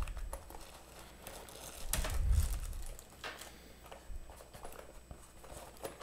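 Plastic wrapping crinkling as a plastic-wrapped cable package is handled and taken out of a headphone carrying case, with scattered light clicks. A louder patch of handling noise comes about two seconds in.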